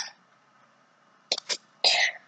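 A child's short, breathy huffs of effort: two quick bursts about a second and a third in, then a longer huff near the end.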